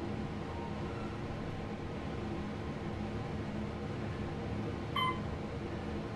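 Steady low hum and rush inside an Otis high-speed traction elevator car as it starts its descent, with a short beep about five seconds in.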